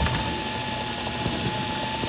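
Moving vehicle's ride noise: a steady low rumble with a thin, steady whine running through it.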